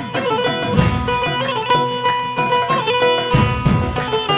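Instrumental Levantine dabke music played live: a long-necked lute plays a fast run of plucked notes over held keyboard tones and low beats from large double-headed drums.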